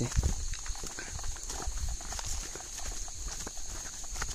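Footsteps on a leaf-strewn forest path, irregular crunching and scuffing of dry leaves underfoot, over a steady high-pitched drone of insects.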